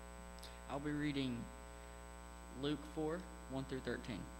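Steady electrical mains hum in the pulpit microphone's sound system, with a few short spoken words about a second in and again near the end.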